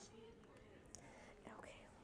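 Faint, hushed talk close to a whisper, with a couple of light clicks.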